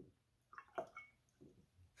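Faint, brief swishing of a paintbrush being rinsed in a jar of water, a few soft sounds about half a second to a second in, otherwise near silence.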